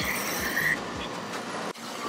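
Camera body rubbing and brushing against clothing as it is carried, a dense rustling noise with a few faint squeaks in the first half. The sound cuts out abruptly near the end.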